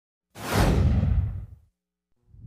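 A whoosh sound effect for a title card: a sudden rush of noise about a third of a second in, with a deep rumble under it and the hiss falling away, fading out after about a second and a half.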